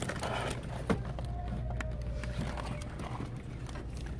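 Cardboard action-figure boxes being handled and knocked against each other on a shelf: a scatter of light clicks and taps, the sharpest about a second in, over a steady low hum.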